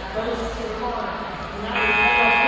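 Indistinct voices in a gymnasium, then near the end the scoreboard buzzer sounds, a loud steady electronic tone that carries on past the end.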